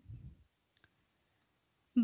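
Near silence: a pause with a brief faint low rumble at the start and a couple of faint clicks.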